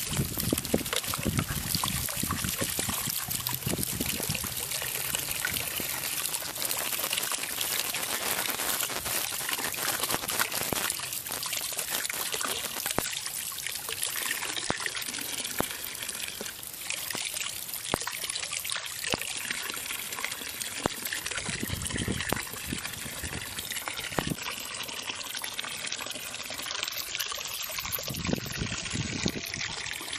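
Water running out of an open riser pipe and splashing into a muddy puddle. The water is left running on purpose while a faucet is threaded onto the riser, so the flow keeps dirt out of the threads.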